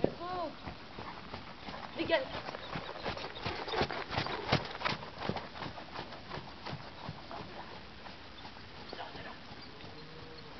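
Horse's hoofbeats on a sand arena, a quick rhythmic run of thuds that grows louder, peaks mid-way and then fades as the horse moves off. A person's short call is heard near the start.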